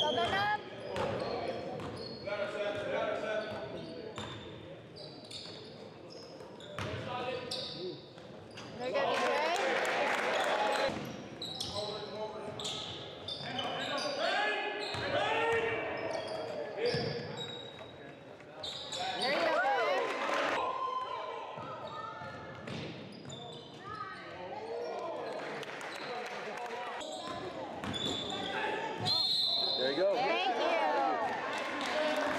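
Indoor basketball game sounds in an echoing gym: the ball bouncing on the hardwood court while players and people on the sidelines call out indistinctly.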